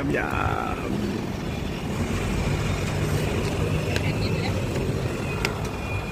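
Steady road traffic noise, with a couple of light clicks later on.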